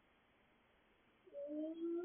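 Toddler's voice, heard through a baby monitor: after near silence, a single drawn-out vocal note starts a little over a second in, rising slightly in pitch and then falling.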